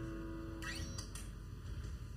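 A held musical tone with rich overtones fading away and ending about a second in. Faint room noise follows, with a few light clicks.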